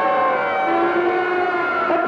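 Film-song orchestra holding a sustained chord, with several of its notes gliding slowly down in pitch.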